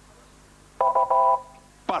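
Quiz-show answer signal: a short electronic chime of two quick pulses of steady tones, a little under a second in, as a contestant buzzes in to answer. A man's voice starts right at the end.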